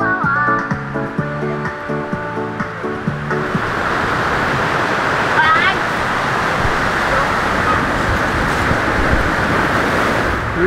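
Background music for the first few seconds, then a steady rush of ocean surf breaking on the shore.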